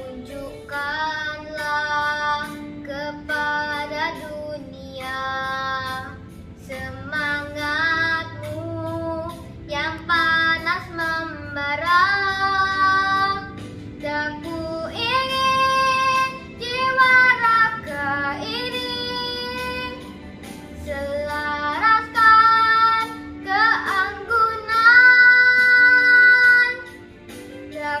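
A young girl singing a solo melody in phrases, holding several long notes near the end.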